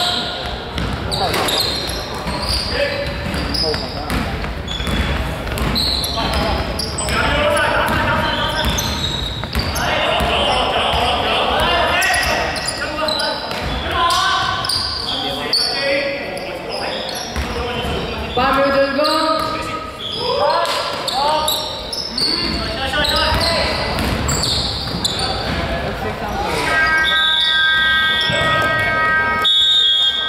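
Basketball bouncing on a hardwood court with players' calls echoing in a large sports hall during live play. Near the end a steady electronic buzzer sounds, the end-of-quarter signal as the game clock reaches zero.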